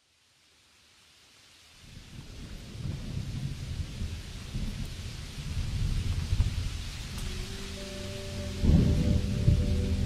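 A recorded thunderstorm, steady rain with rolling thunder, fading in from silence as a song intro. Sustained instrumental notes come in about seven seconds in, and a louder roll of thunder follows near the nine-second mark.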